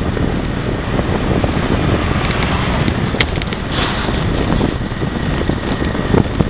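Wind blowing across the camera's microphone: a loud, steady rushing noise, with one short click about three seconds in.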